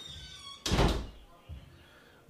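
A door shutting with a heavy thud just over half a second in, followed by a lighter knock about a second later.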